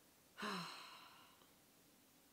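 A woman sighing: a short voiced start about half a second in, then a breathy exhale that fades away over about a second.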